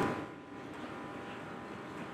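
Faint, steady room tone: a low hum with a few thin, steady tones in it, after a man's voice trails off at the very start.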